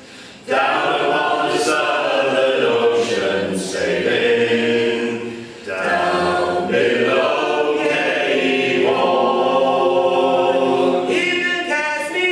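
Unaccompanied three-part vocal harmony, a woman's voice with two men's, singing a folk sea song in held, sustained notes. The singing breaks off briefly right at the start and dips again about halfway through as the singers take a breath between phrases.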